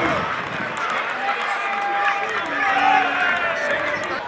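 Voices shouting at a football match, with players and spectators calling out and several drawn-out yells overlapping in the middle.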